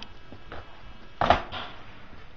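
Small plastic Play-Doh tubs knocking as they are handled and set into their cardboard pack: a light click about half a second in and a louder knock just after a second.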